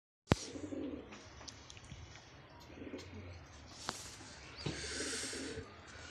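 Domestic pigeons cooing in several low bouts. A sharp click right at the start, and a brief hissy rustle around five seconds in.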